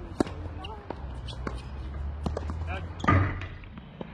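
Tennis ball bounced on a hard court before a serve, a series of sharp clicks, then a louder burst about three seconds in as the serve is struck.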